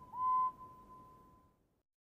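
Cartoon steam engine whistle: the end of a short toot, then a longer, steady toot that fades out.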